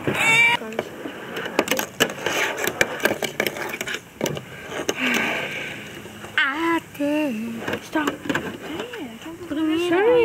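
Fingerboard tricks on a tabletop and small ramp: a run of small sharp clacks and taps as the board's deck and wheels strike and land, with children's voices coming in about six seconds in and again near the end.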